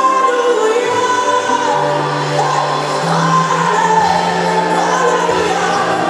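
Live gospel music: a woman sings long, gliding notes into a microphone over a band, with bass notes changing underneath.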